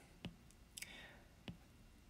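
Near silence broken by three faint, sharp clicks, spread over about a second and a half.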